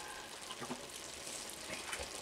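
Faint, steady sizzling of cabbage and noodles cooking in a pot on a gas hob, the broth nearly boiled away.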